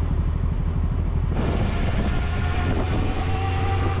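Yamaha Fazer 800 motorcycle's inline-four engine running while riding, a steady low pulsing drone. About a second in the engine and road noise grow fuller.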